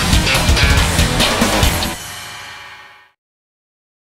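Punk-rock band of electric guitar, bass and drums playing the final bars of the song. About two seconds in the drums stop and a held chord rings on, fading out until it stops about three seconds in.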